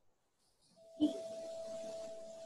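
Dead silence, then about a second in a click followed by a steady hum with a faint hiss underneath, the sound of a video-call participant's open microphone.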